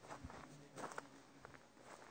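Faint hoof steps of mules shifting about on soft dirt, with a few soft thuds clustered about a second in.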